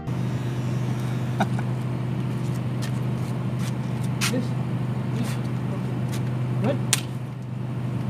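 A steady low mechanical hum holding at one pitch, with a few faint clicks over it.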